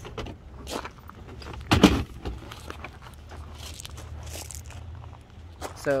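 Handling of a detached plastic front bumper cover from an Acura Integra. There is one dull thump about two seconds in as it is let down, with small plastic clicks and scrapes and footsteps on gravel around it.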